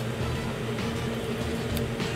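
Steady low hum with a faint hiss, the background noise of a commercial kitchen, with a faint click near the end.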